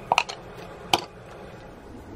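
A few sharp plastic clicks and knocks from a handled plastic pouring cup and spatula: a quick cluster near the start and a single click about a second in, over a steady low hum.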